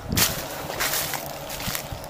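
Footsteps crunching through dry fallen leaves: a few short, loud crunches over a steady rustling hiss.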